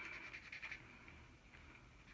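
Near silence, with a few faint strokes of a washable marker drawn across a paper coffee filter.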